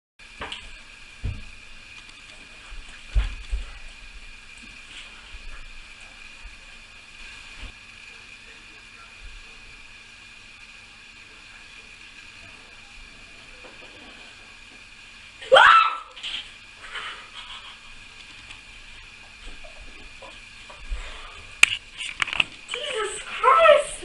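Steady room hiss with a few light knocks, then a sudden loud high-pitched scream about two-thirds of the way in and more screaming near the end: a person startled by a scare prank.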